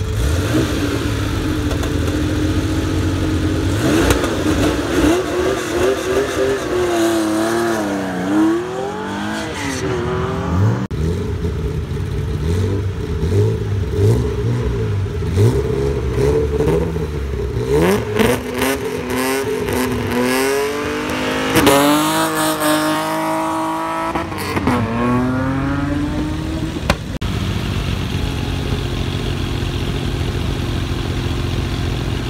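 Historic rally cars leaving a stage start line in turn: a Porsche 911's air-cooled flat-six idles, revs with pitch swinging up and down, and pulls away over the first ten seconds or so. A BMW E30 then idles and revs hard with climbing pitch before launching a little past twenty seconds, and the next Porsche 911 idles near the end.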